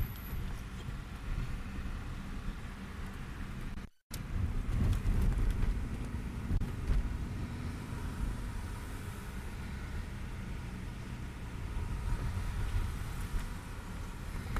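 Low, steady rumble of a car heard from inside the cabin, engine and road noise, with a brief dropout about four seconds in.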